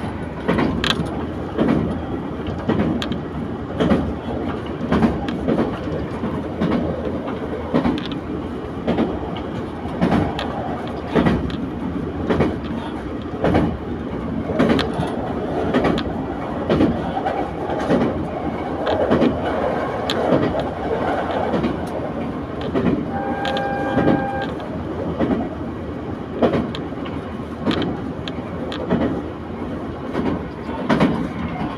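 Diesel local railcar running along the line, heard from inside the cabin: steady running noise with repeated clicks of the wheels over rail joints. A short horn sounds about two-thirds of the way through.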